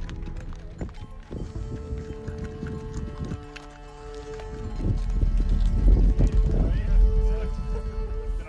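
Background music, joined about halfway through by the hooves of a pack train of laden horses and mules clopping along a dirt track.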